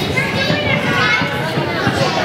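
Young children's voices calling out and chattering in a gym, with a steady hubbub of the hall behind them.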